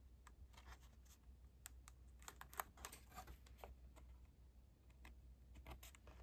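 Near silence with faint, scattered small clicks and ticks as card stock and small acetate pieces are handled and pressed into place.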